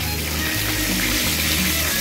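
Chicken wings frying in hot oil: a steady sizzling hiss, under background music with a low bass line.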